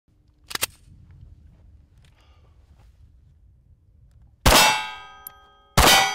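Two pistol shots from a CZ P-10 C, about a second and a half apart, each followed by the long, multi-pitched ring of a steel target being hit. A short sharp crack sounds about half a second in.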